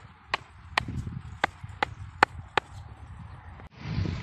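A wooden stake being driven into garden soil with repeated sharp blows, about seven of them, two to three a second, stopping about two and a half seconds in.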